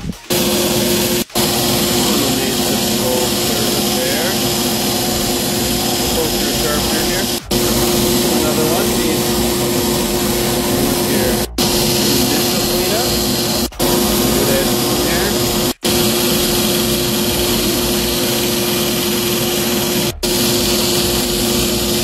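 Belt grinder running steadily with a constant motor hum as knife blades are ground against the abrasive belt to sharpen them; the sound breaks off abruptly for an instant about six times.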